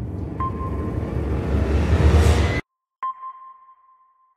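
Hip-hop instrumental beat with heavy bass and a rising whoosh building under it, cut off abruptly. After a short silence, a single sharp sonar-like ping rings out and fades.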